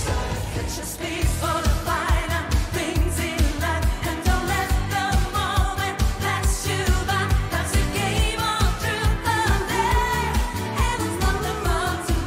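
Pop song performed live by a female vocal duo: a steady drum beat comes in about a second in, under two women singing with a wavering, vibrato-laden line.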